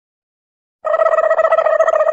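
A single steady, buzzing tone with a fast flutter, starting nearly a second in and cut off abruptly about a second and a half later.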